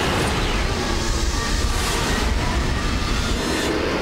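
Steady, dense low rumble of a science-fiction spaceship's engine sound effect in flight.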